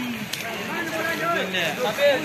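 A group of men's voices talking and calling out over one another, several at once, over a steady background rush.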